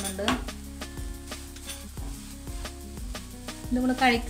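Wooden spatula stirring and scraping grated coconut as it fries in a non-stick pan, in irregular strokes and taps against the pan. Background music with steady held notes plays under it.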